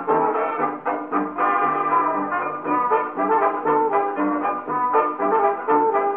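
Dance band's brass-led fox trot instrumental from a 1932 78 rpm shellac record, played acoustically through an EMG Mark IX gramophone's horn with a Meltrope III soundbox and a thorn needle.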